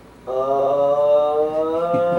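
A voice chanting one long held note that starts about a quarter of a second in and sinks slightly in pitch.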